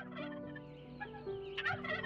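A turkey gobbling in short calls near the start and again near the end, over soft background music of held notes.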